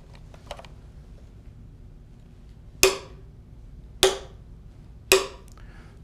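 Three sharp metallic taps about a second apart, each with a brief ring: a small hammer striking the steel start probe of a Fakopp stress wave timer set into a timber bridge cap. Each tap sends a stress wave across the timber to the stop transducer so its travel time can be read.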